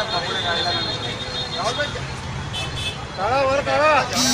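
Several men's voices talking over steady street and traffic noise, with one voice rising loud and wavering in the last second.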